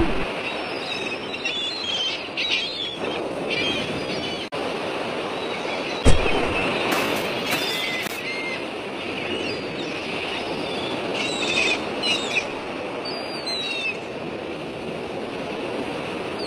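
Outdoor ambience: a steady rushing noise with scattered short high chirps, and one sharp thud about six seconds in.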